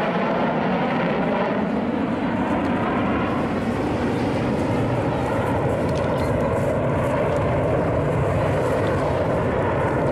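BAE Hawk T1 jets of the Red Arrows flying overhead as a formation, their engines making a loud, steady jet noise whose pitch shifts slowly as the aircraft pass.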